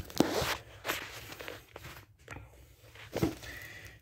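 Handling noise from a phone held in the hand: a few brief rustles and scuffs as it is moved, the first and loudest right at the start and another just after three seconds.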